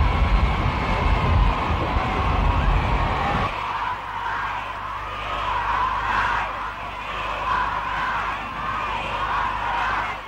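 A large crowd cheering and calling out. A heavy low rumble under it cuts out suddenly about three and a half seconds in, leaving the higher massed shouting.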